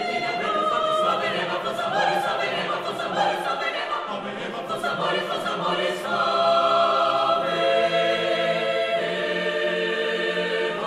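Mixed chamber choir singing a cappella. For about the first six seconds it sings rhythmic, clipped syllables with crisp consonants, then moves into long held chords.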